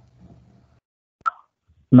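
A faint low murmur, then one short, sharp pop a little over a second in. A woman's voice starts speaking near the end.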